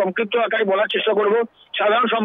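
Speech only: a person talking almost without a break, pausing briefly about one and a half seconds in.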